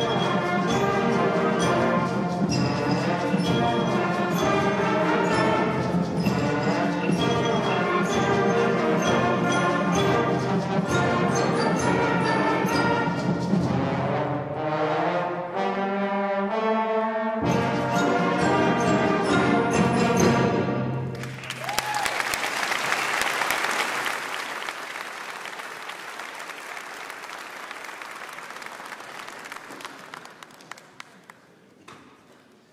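School concert band playing a mambo that features the trombone section, with the low instruments dropping out briefly before the full band returns. The piece ends about two-thirds of the way through, and audience applause follows and fades away.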